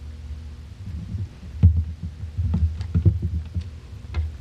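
Low thumps and knocks on a lectern microphone, several in the second half, as the lectern and its microphone are handled, over a steady low electrical hum.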